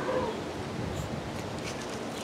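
Faint rustling of hands working loose potting soil and handling a plastic nursery cup, over a steady low outdoor background hiss.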